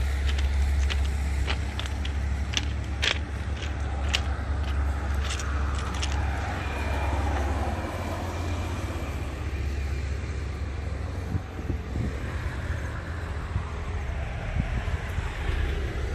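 Road traffic on a highway: a vehicle passes with a falling pitch about six to eight seconds in, over a steady low rumble, with scattered sharp clicks in the first half.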